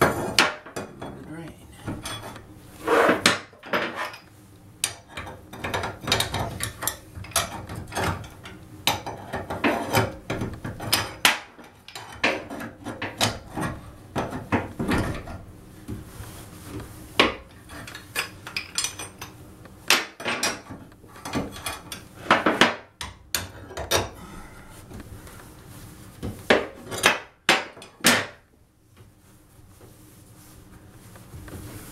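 Pipe wrench and wrecking bar clanking and scraping in the metal drain flange of a steel bathtub, in irregular knocks with several loud clanks, as the old flange is levered round to unscrew it.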